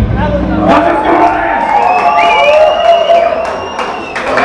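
A live metal band's final chord ends about a second in, and the crowd cheers and shouts, loud and wavering.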